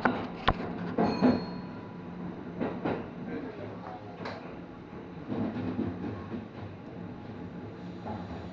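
Kintetsu Ise-Shima Liner electric train running through a tunnel, heard from inside the front of the passenger cabin: a steady low running hum with irregular sharp clicks and knocks from the wheels over rail joints and points. The clicks are loudest in the first second or so, and a few more come around three and four seconds in.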